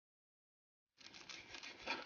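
Silent for the first second, then a large kitchen knife and a plastic zip bag of crushed sugar scraping and rustling against a wooden cutting board, getting louder toward the end.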